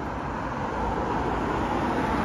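A car driving past on a street, its road noise growing a little louder as it comes close.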